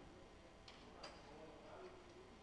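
Near silence: faint room tone with two short, faint clicks close together about halfway through.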